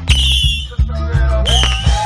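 Whistling fireworks shooting up with high shrieks, one right at the start and another about a second and a half in, followed by a few sharp pops. Loud live band music with drums plays under them.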